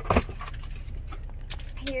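Metal medals clinking and jangling as they are handled and pulled from a pouch: a loud short thump just after the start, then a quick cluster of clinks near the end, over a low steady car-cabin rumble.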